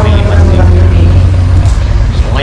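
People talking in conversation over a loud, steady low rumble.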